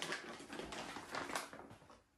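Faint taps and rustles of a person moving about a kitchen, with a few soft knocks.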